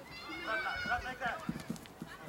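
Shouts and calls from footballers during open play, raised voices carrying across the pitch, with a few dull thuds in the second half.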